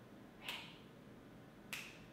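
Two finger snaps about 1.2 seconds apart, keeping a slow beat to sing along to.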